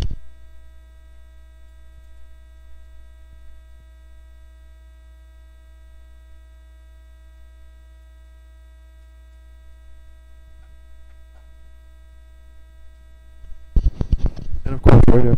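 Steady electrical mains hum with a buzz of many evenly spaced overtones, picked up in the stream's audio chain. It is a fault in the recording, whose audio quality is just plain bad.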